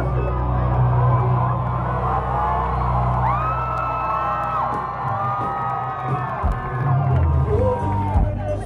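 Amplified live band music with a heavy bass line, under a crowd cheering and whooping. The bass drops back from about five seconds in and comes back in about two seconds later.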